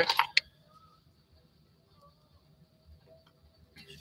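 Near silence: faint room tone with a steady high-pitched hum and a couple of faint clicks near the end.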